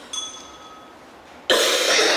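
A woman coughs loudly into her fist, starting suddenly about one and a half seconds in. Just after the start there is a brief, light ringing clink of glass.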